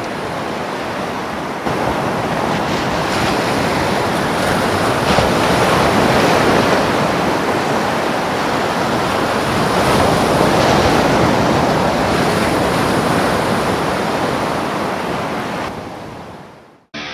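Storm sound effect: a steady rushing of heavy rain and wind. It steps up in level about two seconds in and fades out at the very end.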